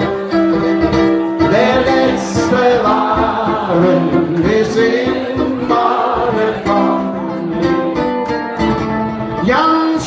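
Live song: a man singing at a microphone with his own acoustic guitar accompaniment.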